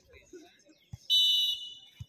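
Referee's whistle: one shrill blast starting about a second in, lasting about half a second before tailing off, the signal for the penalty to be taken.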